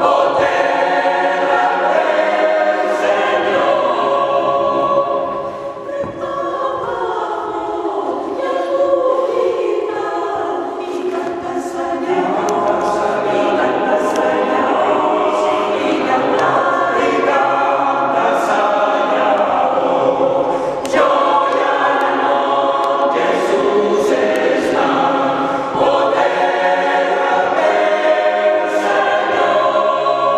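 Mixed choir of men's and women's voices singing unaccompanied in a church, sustained chords moving from phrase to phrase, briefly softer about five seconds in.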